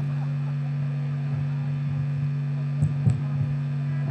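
Steady low hum from the stage amplification once the band stops playing, with two short soft thumps about three seconds in.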